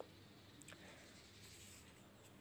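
Near silence: faint scratching of a pen moving on a notebook page, with one small click about two-thirds of a second in.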